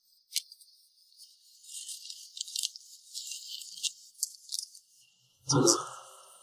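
A sheet of paper rustling and crinkling as it is handled, in a string of crackly clicks, then a short, louder dull thump about five and a half seconds in.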